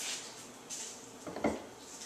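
A short 2x4 offcut being handled on a tiled countertop: faint rustling as it is picked up, then a single dull wooden knock about one and a half seconds in.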